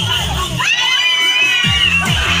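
A crowd of children shouting and shrieking together. Several high voices rise about half a second in and are held, over party music with a bass beat.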